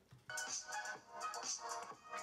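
Music leaking from the open earcups of a pair of Trust Urban Ziva wired on-ear headphones playing at full volume: thin and tinny, with almost no bass.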